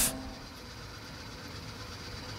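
A pause in a man's speech: the echo of his last word fades quickly, leaving a steady faint room hiss with a light hum.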